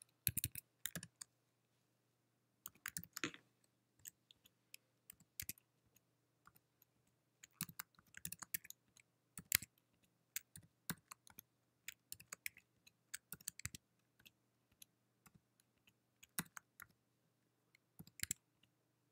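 Faint computer keyboard typing: irregular bursts of keystrokes, with the longest run through the middle.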